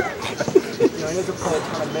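A man laughing, with other voices talking around him.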